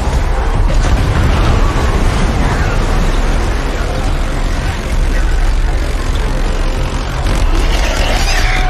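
Dense action-film sound mix of heavy surf crashing and spray plumes bursting against a steel sea wall over a deep continuous rumble, with faint cries mixed in.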